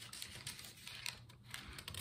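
Faint rustling of Bible pages and light taps as the book is handled before a page is turned.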